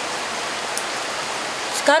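A steady, even hiss of background noise, with a woman's voice starting again near the end.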